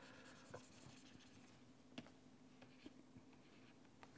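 Faint stylus writing on a pen tablet: soft scratching with a few small clicks from the pen tip. Otherwise near silence, with a faint steady hum.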